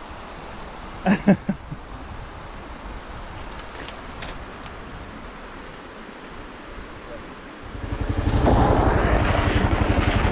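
A low steady rush of river water, then, about three-quarters of the way in, a single-cylinder 650 cc dual-sport motorcycle engine comes in loud with fast, even firing pulses as the bike rides up on gravel.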